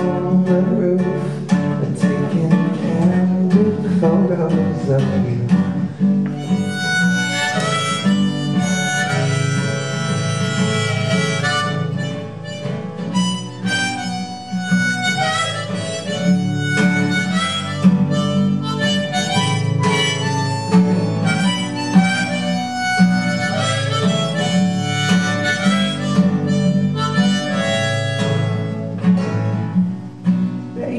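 Instrumental break of a folk song: a steel-string acoustic guitar strummed steadily, with a harmonica playing long held melody notes over it, mainly in two passages.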